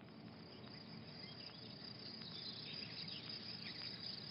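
Swamp ambience of insects chirping, fading in slowly, with a few short higher chirps in the middle.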